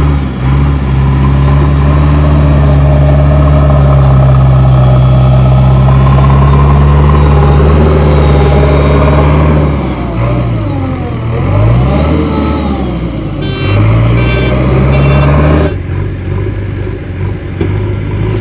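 JCB 3DX Xtra backhoe loader's four-cylinder diesel engine working hard under load as the front bucket pushes soil, holding a steady high rev for about ten seconds. The engine pitch then dips and climbs again as the machine passes close by. A few short high beeps sound a little later.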